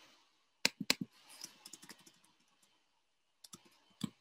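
Computer keyboard keystrokes: typing text into a spreadsheet cell. There are three sharp key clicks a little under a second in, lighter taps after them, and two more clicks near the end.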